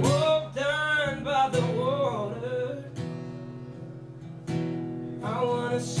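Male voice singing over a strummed acoustic guitar. The singing drops out in the middle while the guitar chords ring on more quietly, then comes back near the end with a sung "yeah".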